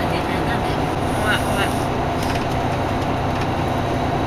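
Steady low drone of a coach bus running, heard from inside the passenger cabin, with a few faint short voice sounds over it.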